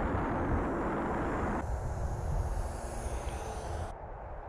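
Twin electric motors and propellers of an AtomRC Swordfish RC plane flying low, with heavy wind rush. About one and a half seconds in, the sound drops abruptly to a fainter, thinner motor whine.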